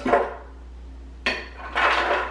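Handling clatter at a plastic blender jar: a short knock at the start as banana pieces drop in, then, near the end, a brief knock and a longer clatter as the lid is pushed onto the jar.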